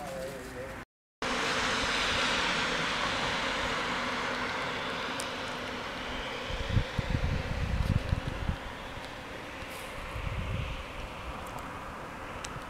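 Outdoor street noise: after a brief cut to silence about a second in, a steady hiss like traffic on a wet road slowly fades, and wind rumbles on the microphone in gusts in the second half.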